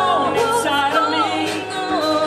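A live band playing a song, with several voices singing together over bass guitar and drums.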